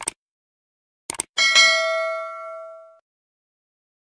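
Subscribe-button sound effect: a short click, then two quick clicks about a second in, followed by a bright notification-bell ding that rings out and fades over about a second and a half.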